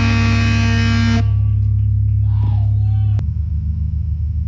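A live metal band's distorted electric guitars and bass hold a chord that cuts off about a second in. A low bass drone keeps sounding through the amplifiers. After a click near the end, the drone pulses.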